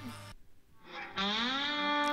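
Near silence, then about a second in an electric slide guitar note slides up and holds, played through effects: the opening of a metal song.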